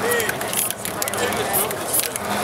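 Aerosol spray paint can hissing in short bursts as it is sprayed onto a painting board.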